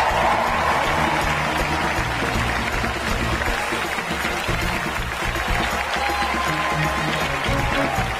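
Walk-on music playing over sustained audience applause in a large auditorium, as presenters are welcomed onto the stage.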